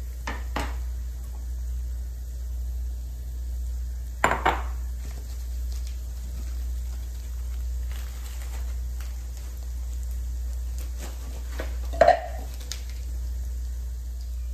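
Scattered clinks and knocks of a glass bowl and kitchen utensils being set down on a countertop, the loudest about four and twelve seconds in, the later one with a short glassy ring.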